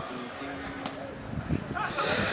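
Indistinct voices over a low street background, with a couple of low thumps about a second and a half in.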